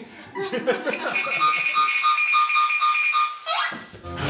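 Cartoon-style sound effects played over a comic stage act: a man laughing briefly, then a high pulsing tone for about two seconds, then a quick rising glide.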